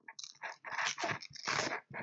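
Hook-and-loop fastener straps being peeled open, a series of short tearing rips as the straps are undone to release the battery.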